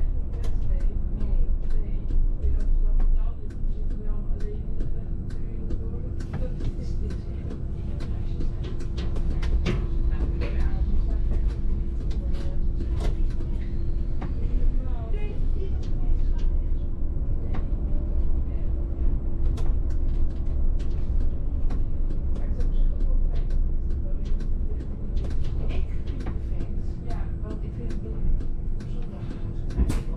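Inside a VDL city bus on the move: a steady low rumble from the drivetrain and road, with a steady hum throughout and frequent small rattles and knocks.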